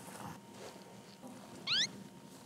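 A short, quick rising whistle-like tone near the end, a cartoon-style sound effect laid in by the editors, over a quiet room.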